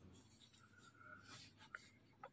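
Near silence, with a faint rustle of cloth being handled and folded.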